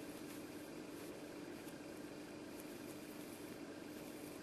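Quiet steady room tone: a faint even hiss with a low steady hum, no distinct events.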